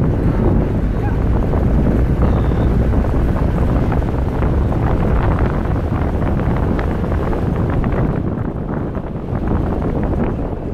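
Wind buffeting the microphone of a camera on a safari vehicle driving along a rough dirt track, with the vehicle's rattles and jolts coming through as many sharp clatters. It eases slightly near the end.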